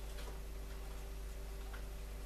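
Quiet room tone: a steady low electrical hum with faint hiss and a few soft, irregular clicks.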